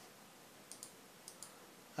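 Two computer mouse clicks about half a second apart, each a quick double tick of the button pressing and releasing, over faint room hiss.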